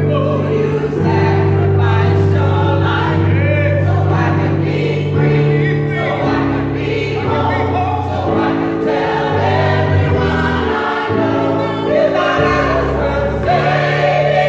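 Gospel choir singing together over a digital piano playing held chords that change every second or two.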